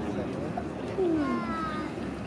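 A voice gives a drawn-out call that falls in pitch, about a second in, louder than the low background voices around it.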